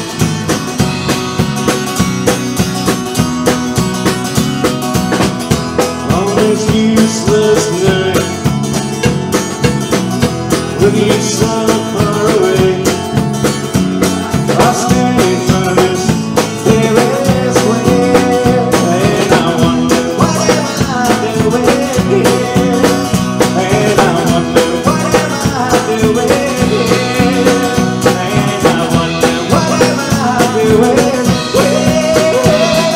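Live band music: a strummed acoustic guitar over a steady drum-kit beat.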